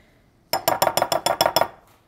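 Metal spoon and fork clinking rapidly against each other and the rim of a glass mixing bowl, about a dozen quick ringing taps over a second, as sticky honey and peanut butter are knocked off the spoon.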